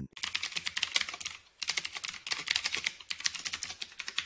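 Computer keyboard typing: a rapid run of keystrokes, with a brief pause about a second and a half in, as the code of a C function header is typed.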